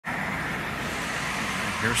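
Steady street background noise, a low hum under an even hiss, typical of distant road traffic. A man's voice starts right at the end.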